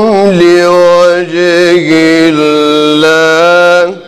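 A man's voice in melodic Qur'anic recitation (tajwid): one long phrase that glides down at the start, then holds sustained notes that step lower in pitch, and breaks off sharply just before the end.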